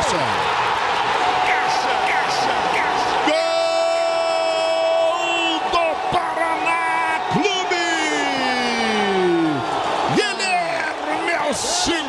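Football commentator's drawn-out goal cry over a cheering stadium crowd: a single shouted vowel held steady for about four seconds, then sliding down in pitch as it trails off, the call for a goal just scored.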